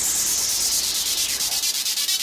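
A filtered white-noise sweep falling steadily in pitch, a dance-music transition effect played with the kick drum dropped out. A fast, even pulsing comes up under it near the end.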